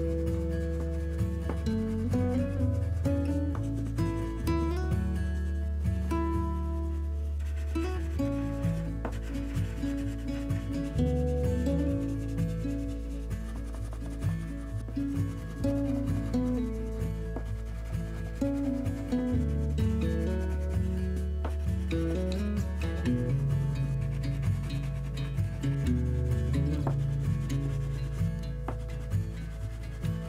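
Water-soluble wax crayons scrubbing back and forth on paper in short repeated strokes as colour swatches are filled in, heard over background music with a slow stepping bass line.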